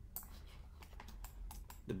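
Typing on a computer keyboard: a quick, irregular run of about a dozen faint key clicks.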